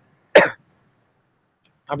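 A man coughs once, a single short sharp burst about a third of a second in.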